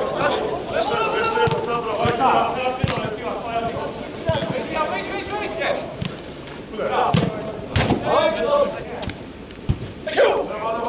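Men calling out to each other during play, with several sharp thuds of a football being kicked; the loudest kick comes about eight seconds in.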